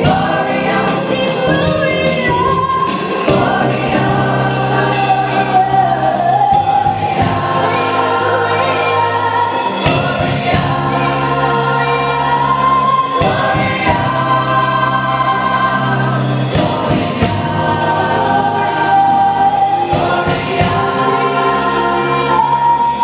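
Gospel choir singing in full voice, backed by a live band of electric guitar, bass guitar and keyboard, over a steady beat.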